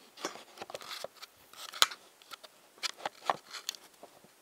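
Handling noise from a camera being picked up and propped back in place: irregular clicks, scrapes and rustles, with a sharp click a little under two seconds in.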